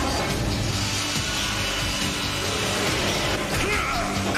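Background music from a cartoon soundtrack mixed with continuous mechanical whirring and grinding sound effects. A few short sweeping pitch glides come near the end.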